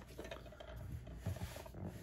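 Faint handling noise of plastic DVD cases: soft rubbing and a few light clicks as a case is picked up and handled.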